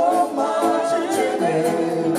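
Gospel vocal group singing live in harmony, several voices holding and moving between notes together.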